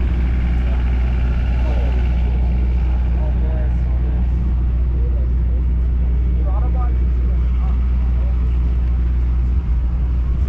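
A car engine idles steadily with a constant low hum, and scattered crowd voices are faintly heard over it.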